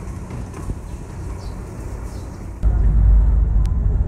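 A steady low engine hum, then about two and a half seconds in a sudden switch to a much louder, deep, steady rumble of a passenger ferry's engines heard from inside the cabin.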